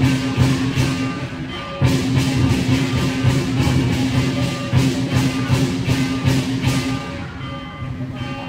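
Loud music with a fast, steady beat of about four sharp hits a second over sustained low tones; it breaks briefly about two seconds in and gets quieter about seven seconds in.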